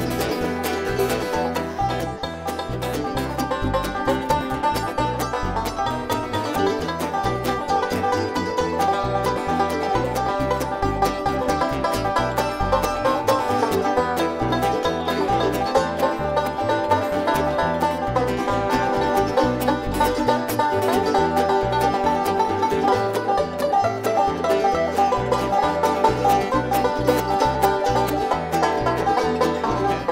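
Live bluegrass band playing an instrumental break without singing: banjo, mandolin and acoustic guitar picking over a steady upright bass line.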